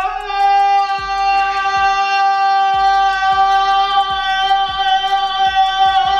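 A young man's voice holding one long, loud sung note at a steady pitch: the drawn-out shout of "It's taco Tuesday!"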